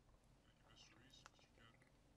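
Near silence, with a faint, indistinct voice speaking from about half a second in until near the end.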